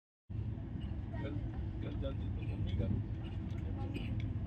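Steady low rumble inside a passenger train coach, with several people's voices chatting over it.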